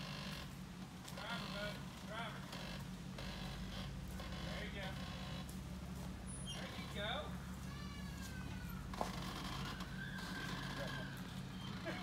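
Jeep Wrangler engine running steadily at low revs as the Jeep crawls over a rock ledge, with people talking in the background.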